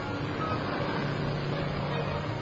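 Steady drone of a single-engine agricultural aircraft's engine in flight.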